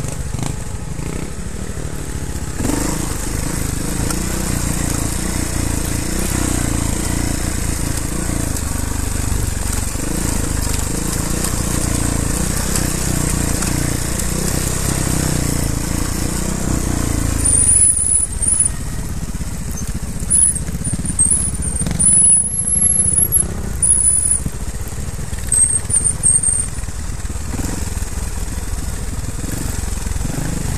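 Trials motorcycle engine running on a rough forest trail, its pitch wavering with the throttle, then dropping to a quieter run a little past halfway. Short high-pitched squeaks come and go during the quieter part.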